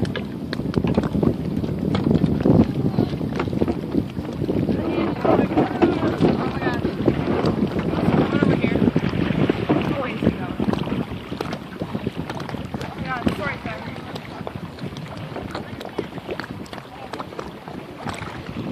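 Wind buffeting the microphone, with indistinct voices talking in the background.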